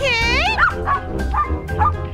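A high, wavering dog-like whine in the first half-second, over background music with a steady low beat.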